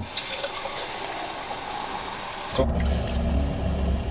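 A steady hiss, then from about two and a half seconds in a steady low hum with a deep drone.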